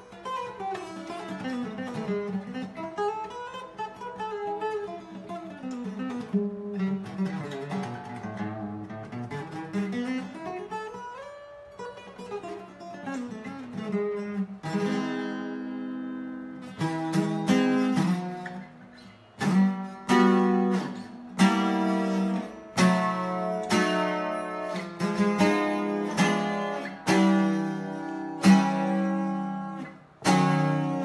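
Fortaleza twelve-string acoustic guitar played solo. For roughly the first half it picks melodic runs up and down the scale. About halfway through it switches to loud strummed chords in a steady rhythm, about one a second.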